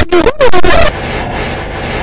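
A very loud, distorted voice for about the first second, then a steady noisy roar with no voice for the rest.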